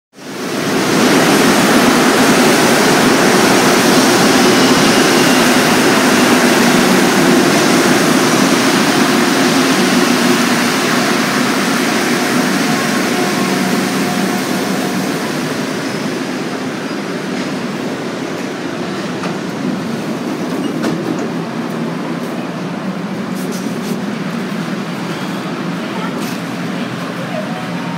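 Montreal Metro MR-63 rubber-tyred subway train running through the station, a loud rumble with a steady motor hum. It eases off over several seconds about halfway through and then stays lower with a few light clicks.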